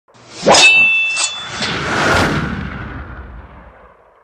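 Intro sound effect: a loud metallic clang about half a second in that rings on with a steady high tone, followed by a few lighter hits and a rising hiss that peaks and then fades out.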